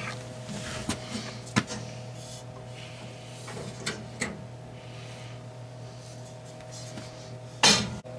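Light knocks, clicks and rubbing as a glass CO2 laser tube is handled and slid out of the laser machine, over a steady low hum, with a louder bump near the end.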